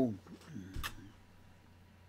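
A man's drawn-out 'so' trails off, then a single sharp click a little under a second in, over a faint low hum.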